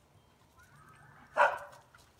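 A single short dog bark about a second and a half in, from dogs play-wrestling.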